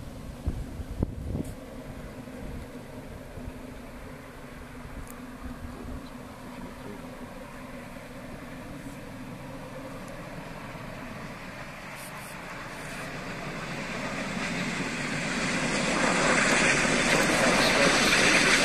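A steam train approaching along the line, its noise swelling steadily louder over the last five seconds or so, after a quieter stretch with a few knocks near the start.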